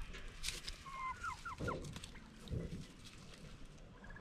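Domestic turkeys calling: a quick run of about five short, high, bending notes about a second in, followed by two brief low sounds, over faint rustling.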